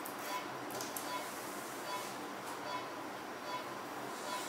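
Operating-theatre background: a steady hiss with a faint, high electronic beep repeating at an even pace from the surgical equipment.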